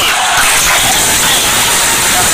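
Audience applauding steadily in a hall.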